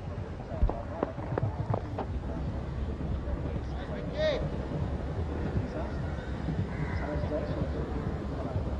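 Cricket ground crowd ambience: a steady murmur with a few scattered claps early on and one brief rising-and-falling call about four seconds in.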